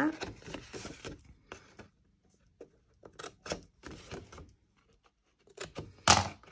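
Fiskars scissors snipping thin cardstock: a handful of short, sharp snips spaced irregularly, with light handling of the paper between them.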